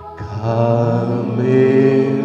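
A man's voice singing a slow hymn with long held notes. A new note comes in just after the start, and the pitch steps up about a second and a half in.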